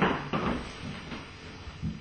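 A couple of sharp knocks at the start, fading away, then a duller thump near the end, like a wooden door or cupboard being handled.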